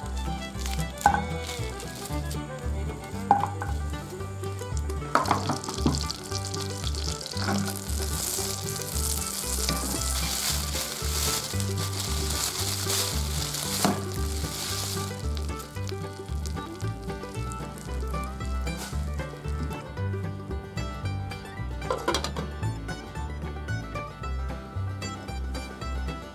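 Butter sizzling in a hot nonstick frying pan as a frozen, egg-soaked slice of bread goes in. The sizzle builds from about five seconds in and fades out a little past the middle. A few sharp knocks sound over steady background music.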